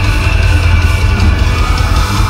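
A metalcore band playing loud and live through a venue PA: distorted electric guitars, bass and drums.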